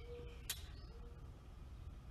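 Near-quiet room tone with a single faint sharp click about half a second in.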